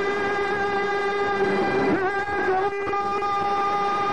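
A man's voice singing Kurdish maqam, holding one long note at a steady pitch, with a brief waver about halfway, against violin accompaniment.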